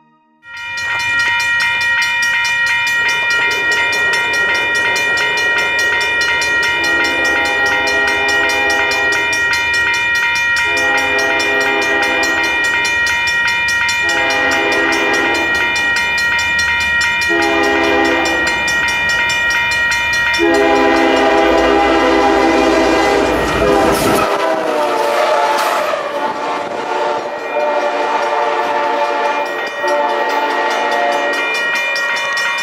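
Diesel locomotive horn sounding a series of long blasts, each a few seconds long and the last the longest, as a train approaches over a steady high ringing that is typical of grade-crossing bells. About three-quarters of the way in, the locomotive passes close with a sudden rush and its deep rumble cuts off, leaving the roll of the train.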